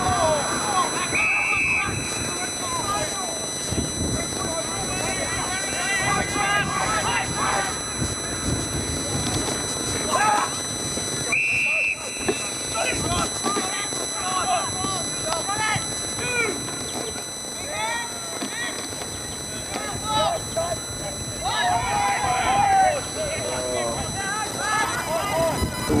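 Players and spectators shouting and calling across an open football ground, with two short whistle blasts: one about a second in and one about halfway through.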